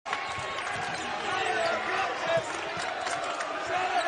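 Game sound in a basketball arena: a steady crowd hubbub with faint voices, and the ball bouncing on the hardwood court during live play.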